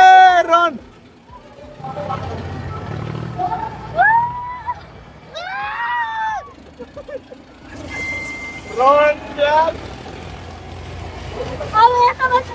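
A young man screaming in fright while riding a fairground ferris wheel: a very loud scream at the start, then shorter high yells every second or two, with a low rumble underneath.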